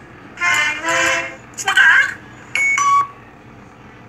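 Four short, loud, pitched sound-effect tones from the Scratch logo animation playing through computer speakers, the last a steadier beep-like tone.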